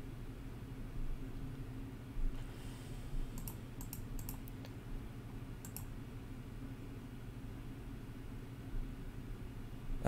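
Light clicks of a computer keyboard and mouse: a quick run of about seven clicks between three and five seconds in, then two more near six seconds, over a low steady hum.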